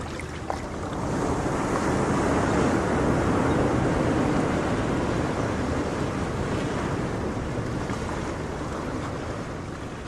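Ocean surf: the rush of a wave washing in, swelling about a second in and then slowly receding.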